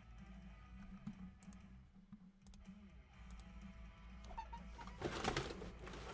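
Faint background music over a steady low hum, with a few light clicks and a short, louder clatter about five seconds in.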